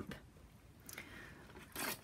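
Quiet handling of a cling rubber stamp being pressed onto a clear acrylic block: a faint tick about a second in and a brief soft scrape near the end.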